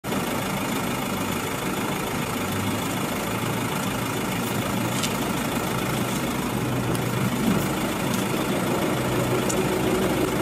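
A vehicle engine idling steadily, with a few faint clicks along the way.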